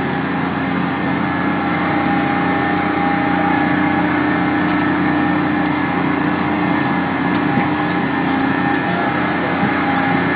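Quasar carnival ride running, its machinery making a loud, steady drone with several even hum tones.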